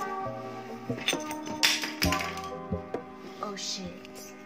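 Lo-fi hip-hop background music: sustained mellow chords with a few soft drum hits.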